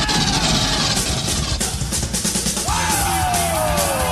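Loud heavy rock music with a driving drum beat and a yelled vocal; a long note slides down in pitch starting about two-thirds of the way through.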